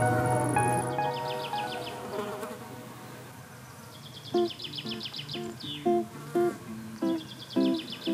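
Insects chirping in short bursts of rapid, high-pitched pulses, three bursts in all, over acoustic guitar music. Held notes fade out in the first two seconds, then plucked guitar notes begin about four seconds in.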